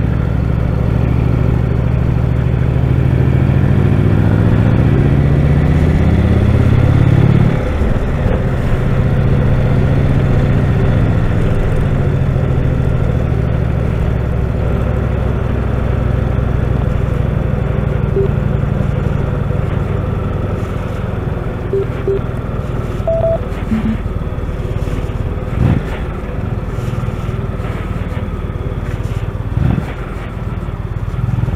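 Touring motorcycle engine under way: the engine note climbs steadily for the first seven seconds or so, drops suddenly, then settles into a steady cruise with wind noise over it.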